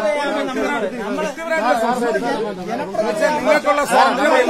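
Several men's voices talking over one another in Malayalam, with no pause, in a street argument.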